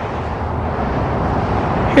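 Steady outdoor background noise: a constant even rush with a low hum underneath and no single event standing out.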